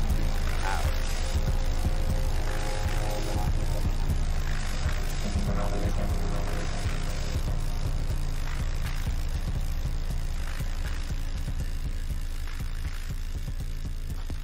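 Music with a heavy, steady bass line, slowly getting quieter.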